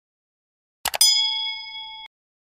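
Subscribe-button sound effect: a quick double mouse click about a second in, followed at once by a bright notification ding that rings on and slowly fades.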